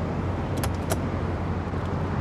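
Two short clicks of an RV's exterior compartment paddle latch being released as the door is swung open, over a steady low rumble of outdoor background noise.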